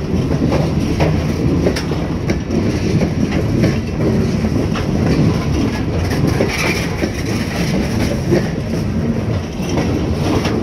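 Freight train of CSX open-top hopper cars rolling past: steel wheels rumbling on the rails, with a steady run of clicks as the wheels cross rail joints.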